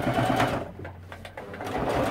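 Electric Singer sewing machine stitching in two short runs, with a pause of about a second between them.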